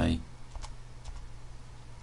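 A couple of faint computer keyboard clicks over a low steady hum, just after the end of a spoken word.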